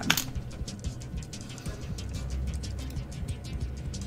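Background music under rapid clicking of a computer keyboard being typed on, with one sharper click right at the start.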